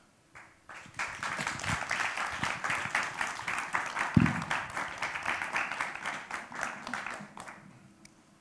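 Audience applauding, starting about a second in and dying away near the end, with a brief low thump about halfway through.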